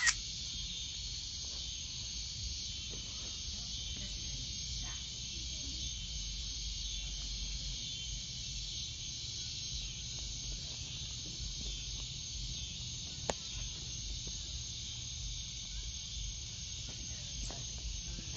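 Steady high-pitched chorus of insects, unbroken throughout, over a low rumble, with one sharp click about thirteen seconds in.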